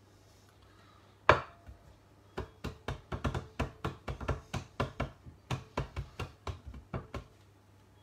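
One sharp knock, then a run of quick, sharp knocks or taps, about four a second, lasting around five seconds.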